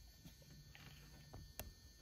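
Near silence: faint room tone with a low steady hum and a few small clicks, one sharper about one and a half seconds in.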